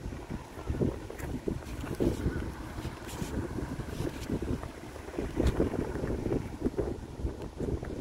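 Wind buffeting the microphone in uneven gusts, a low rumble that rises and falls, with a few faint clicks.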